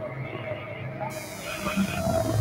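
Electronic music played live on synthesizers and laptop: sustained low droning tones with a held mid-pitched tone above them, and a wash of high hiss that comes in about a second in.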